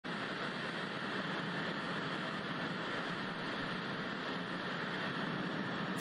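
Steady, even hiss of television static.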